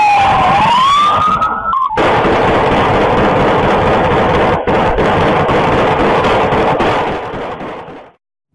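A police siren wails, falling and then rising. About two seconds in it gives way to a long, loud barrage of gunfire, the shots running together into a dense, distorted roar, as picked up by a home security camera's microphone. The barrage fades just before the end.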